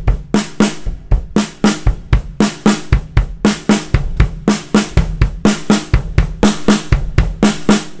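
Drum kit playing a bass-drum doubles exercise: two kick-drum strokes followed by single right and left snare strokes (kick, kick, right, left), repeated evenly about once a second.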